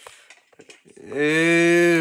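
A long, low mooing call, held steady for about a second from just past the middle and dropping in pitch as it fades, after a few faint clicks.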